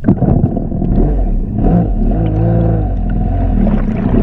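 Stand-up jet ski's engine running loud, starting abruptly and wavering up and down in pitch through the middle.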